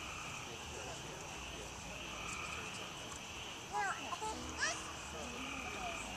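A steady, pulsing high-pitched chorus of evening insects, with a high child's voice calling out twice about four seconds in.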